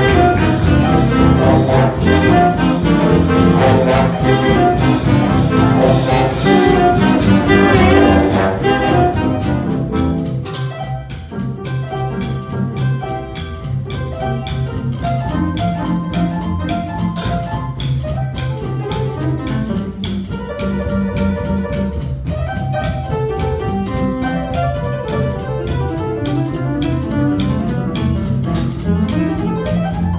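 A school jazz big band playing live swing: saxophones, trumpets and trombones over a drum kit. The full band plays loudly for about the first eight seconds, then drops to a quieter passage with the cymbal keeping a steady beat.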